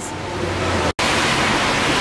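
Steady hiss of pouring rain, broken by a sudden drop-out about a second in; before the break, a low hum runs under the hiss.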